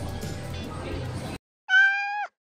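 Café room noise with faint background music cuts off abruptly about 1.4 s in; after a short silence a single loud, high-pitched meow-like call sounds, held level and dropping away at its end.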